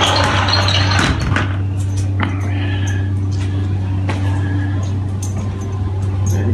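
A steady low hum, with a few light clicks and a brief broader rustle in the first second.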